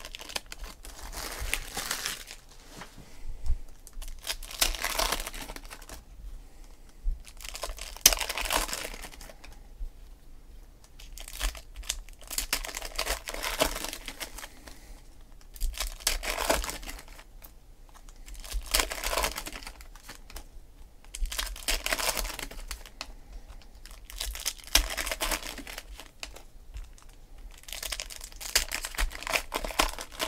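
Foil trading-card pack wrappers crinkling and tearing as packs are ripped open one after another, in bursts every two to three seconds.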